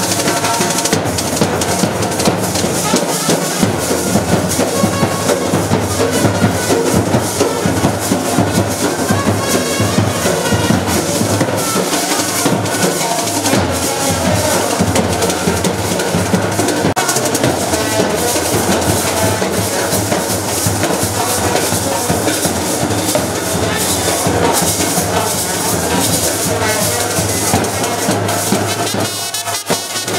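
Street procession band playing: drums beating steadily and loudly, with brass horns under them.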